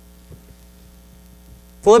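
Steady electrical mains hum in a quiet pause, with a faint click about a third of a second in. A man's voice starts near the end.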